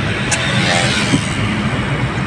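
Car driving, heard from inside the cabin: a steady rumble of engine and tyre noise on the road, with one brief tick about a third of a second in.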